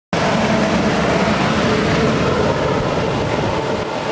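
Ford Mustang Cobra V8 idling on a chassis dyno: a loud, steady mechanical din that holds an even pitch and level throughout.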